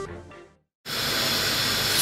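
Background music fades out in the first half second; after a brief dead gap, minced beef sizzles steadily as it browns in a hot frying pan.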